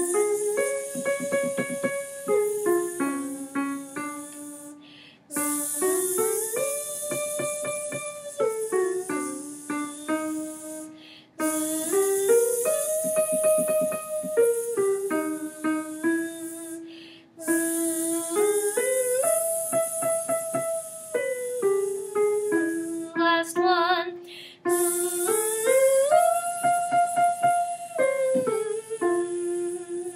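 A woman singing a vocal warm-up on a buzzing 'z' sound: an arpeggio up three steps, a top note pulsed five times, and back down. Five runs with short breaks between them, each starting a half step higher than the last, beginning from middle C.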